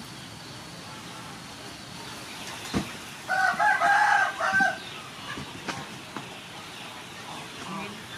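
A rooster crowing once, a loud call about a second and a half long around the middle, with a single sharp knock just before it.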